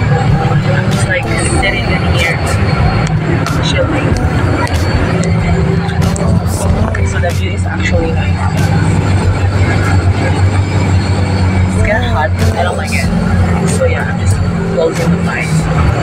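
Steady low engine drone and road noise inside a moving bus, with voices over it.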